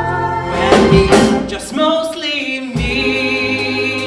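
A man singing into a microphone with a live band accompanying him. There are a couple of cymbal or drum hits about a second in, and he holds a long note near the end.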